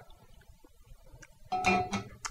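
Near quiet for the first second and a half, then plucked guitar music starts, with a steady held note.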